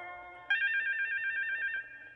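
Electronic page-turn signal from a talking Big Bird toy: a warbling trill like a telephone ringing, starting about half a second in and lasting just over a second. It signals that it is time to turn the page of the book.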